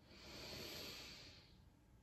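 A single faint, deep human breath: a soft hiss that swells and fades over about a second and a half.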